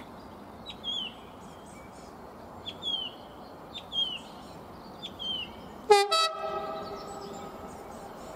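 Class 66 diesel locomotive sounding its horn: one short, loud two-note blast about six seconds in, rising sharply at the start, over the steady noise of the approaching train.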